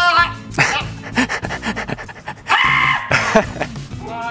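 A man laughing in several bursts over background music.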